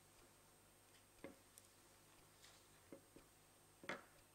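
Near silence: room tone with a handful of faint clicks and taps, the loudest just before the end.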